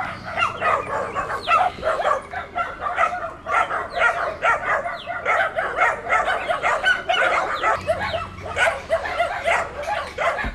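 Several dogs barking at once, short barks overlapping several times a second without a break.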